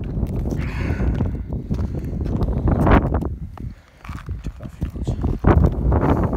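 Close-up handling noise over a low rumble: clothing rustling, scuffs and irregular knocks near the microphone as a fish is held and worked on, with a louder knock about three seconds in and another near the end.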